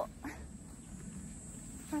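A pause between a woman's spoken phrases, filled by a faint low rumble, with speech starting again near the end.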